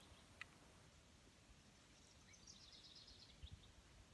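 Near silence outdoors, with a faint high, rapid bird trill about halfway through and a faint tick near the start.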